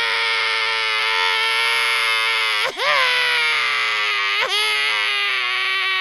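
A cartoonish crying wail, held on one high pitch in long drawn-out cries with short catches about two-thirds and three-quarters of the way through, wavering into shaky sobs at the very end.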